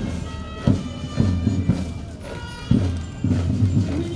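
Military march music with a heavy drum beat, mixed with the tramp of a column of soldiers' boots marching in step.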